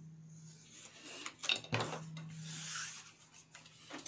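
Paper being handled on a cutting mat: sheets sliding and rustling as the envelope blank is moved and cut-off scraps are swept away, with a couple of sharp knocks about a second and a half in.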